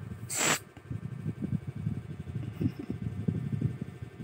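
One short cat hiss about half a second in, followed by soft, irregular rustling and scuffling.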